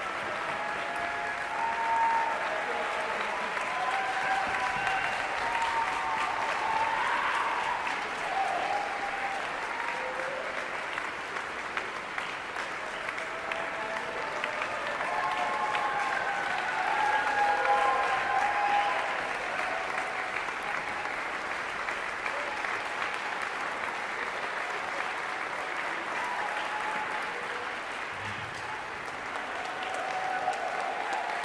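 Concert-hall audience applauding steadily after a performance, with cheering voices rising over the clapping in two swells, one near the start and one in the middle.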